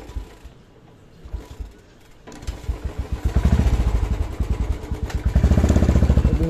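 Motorcycle engine that starts running about two seconds in, after a few faint thumps, and keeps going with a fast, even pulsing beat that grows louder.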